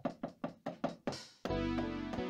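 Roland SPD-20 electronic percussion pad struck with drumsticks: a quick run of short knocking hits, about five a second. About halfway through, a sustained pitched sound with a deep bass takes over.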